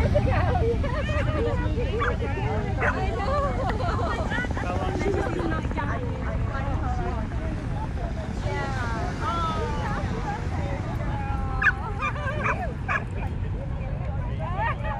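Dogs barking now and then among people's background chatter, with a sharp loud sound near the end. A steady low rumble of wind on the microphone runs underneath.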